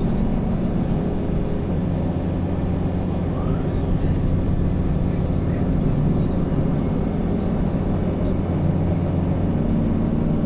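Mercedes-Benz Conecto city bus's OM936 inline-six diesel engine running steadily, heard from inside the passenger cabin as a low drone, with faint small rattles from the interior.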